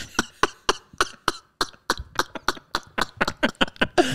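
A man laughing hard and almost silently, in a rapid run of short breathy gasps that quicken near the end.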